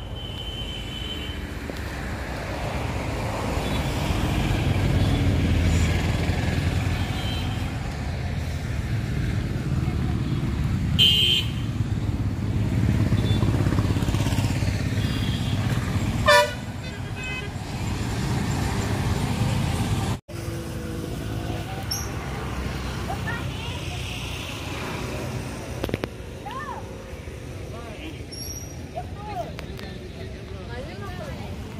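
Road traffic passing: a low engine rumble that swells and fades, with a couple of short horn toots about eleven and sixteen seconds in. The sound cuts out for an instant about twenty seconds in.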